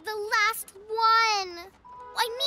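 A high-pitched child's voice, sung or drawn out: a short call, then a long note that slowly falls in pitch.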